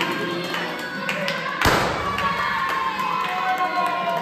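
A handheld confetti cannon goes off with one sharp, loud pop about one and a half seconds in, over music and a group clapping.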